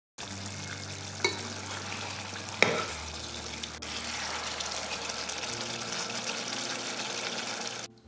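Chicken gravy simmering and sizzling in a pot as a metal spoon stirs it, with two sharp clinks in the first three seconds.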